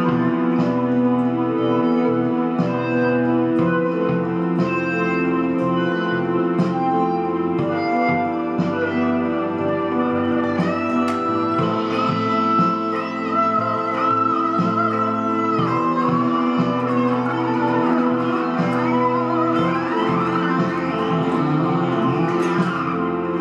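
A Les Paul-style electric guitar played through a Line 6 combo amp picks out an improvised lead melody over an orchestral backing track of sustained chords. A long note is held in the middle, and the notes slide and bend near the end.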